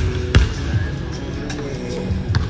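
A basketball bouncing on a hardwood gym floor, one sharp bounce about a third of a second in, over background music.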